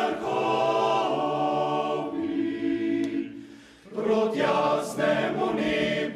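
Male voice choir singing unaccompanied in harmony, holding long chords with the basses low underneath. One phrase dies away about three seconds in, and a new phrase starts about a second later.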